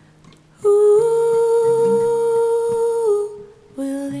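A woman's voice holding one long, steady, wordless sung note for about two and a half seconds, beginning a little after the start, over soft low plucked notes on a Takamine acoustic guitar; a new short note starts near the end.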